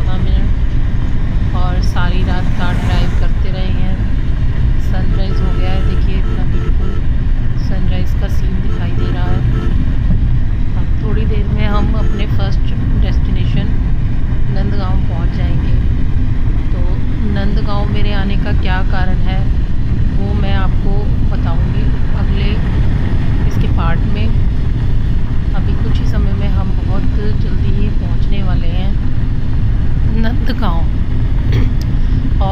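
Steady low road and engine rumble of a moving car heard from inside the cabin, with voices talking on and off over it.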